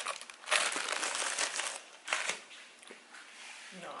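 A thin plastic cup lid crinkling in the hand while a smoothie is sipped from a paper cup. There is a dense burst of crinkling and sipping noise from about half a second in, lasting over a second, then a short sharp crackle a little after two seconds.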